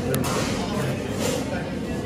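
Hubbub of many people talking at once in a busy canteen, with one sharp click just after the start.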